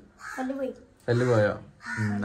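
Two short vocal utterances from people close by, about half a second each, with no clear words.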